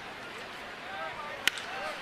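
Single sharp crack of a wooden bat squarely hitting a pitched baseball, about one and a half seconds in, over a low murmur of stadium crowd noise.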